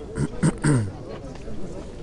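A man's voice in the first second: a few drawn-out syllables whose pitch slides downward. After that comes a faint background murmur of people standing around talking.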